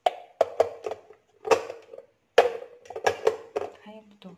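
Hard plastic and glass parts of a small drip coffee maker being handled: a string of sharp clicks and knocks with a short ring as the carafe and its black plastic lid are fitted and set in place.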